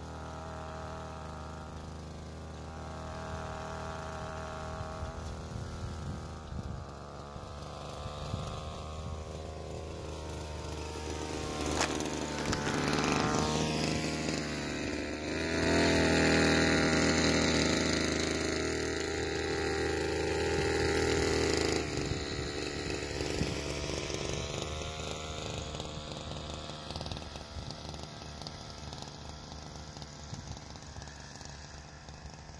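Blade GP 767 motorised backpack sprayer: its small two-stroke petrol engine runs steadily while the lance sprays a fine mist of pesticide. The hiss of the spray grows much louder in the middle, as the lance comes close, and drops off suddenly about two-thirds of the way through.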